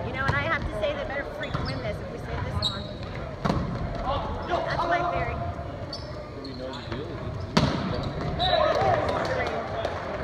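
Volleyball rally on a hardwood gym court. The ball is struck hard twice, about three and a half and seven and a half seconds in, amid players' shouts and calls.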